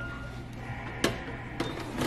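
A corded telephone handset hung up on its cradle: one sharp clack about a second in, then a lighter click, over a steady background hum.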